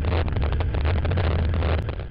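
Snowmobile engine running steadily under way at speed, a deep constant drone with rushing noise over it, easing off slightly near the end.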